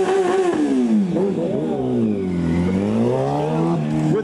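Sportbike engine held at high revs through a stationary burnout, the rear tire spinning on the pavement. The revs fall from about a second in, bottom out around two and a half seconds, then climb again near the end.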